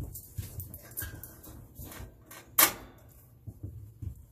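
Stainless steel Stanley Boil + Brew pot set down on a gas grill's burner grate with one sharp metal clank about two and a half seconds in, after footsteps and a few light handling knocks.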